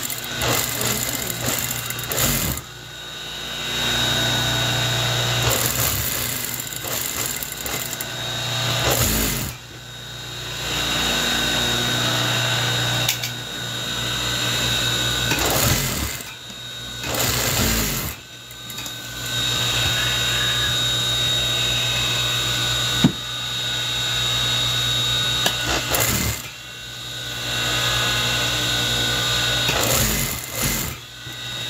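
Electric sewing machine stitching through navy woven fabric, its motor running in repeated runs of a few seconds with short pauses between as the cloth is guided and repositioned: a steady hum with a high whine on top.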